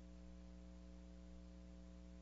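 Near silence with a steady low electrical hum.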